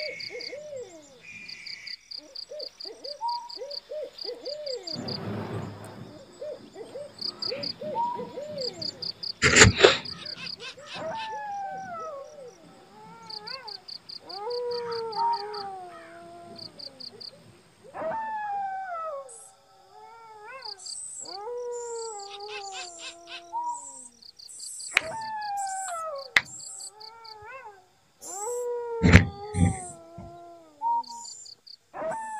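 Night-time wild animal calls: short repeated notes at first, then long falling calls that come every second or two, over insects chirping in fast high-pitched pulses. A few sharp knocks stand out, the loudest about ten seconds in and another near the end.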